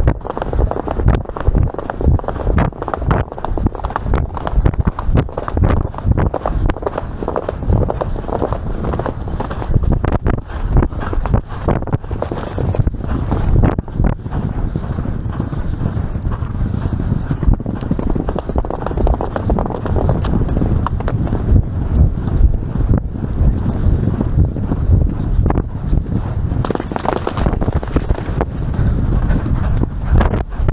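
Hoofbeats of a grey horse galloping cross-country, heard from the saddle as a steady, rapid beat. The hooves strike a woodland dirt track at first, then open turf.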